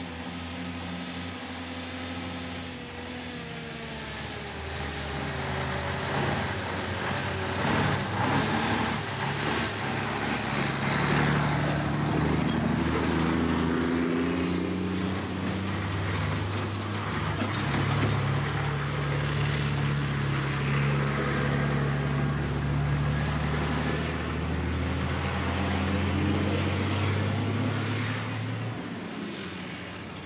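Heavy trucks' diesel engines pulling away and driving, the engine note rising and falling as they accelerate and change gear, growing louder after the first few seconds.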